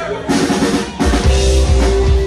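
Live rock band starting a song: drums strike in first, then bass guitar and electric guitars come in about a second later and play on together.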